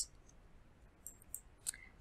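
A few faint computer mouse clicks over quiet room tone: one right at the start and a couple more about a second and a half in.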